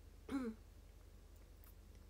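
A woman's single brief vocal sound, a short laugh-like breath about a third of a second in. After it there is only a faint steady low hum.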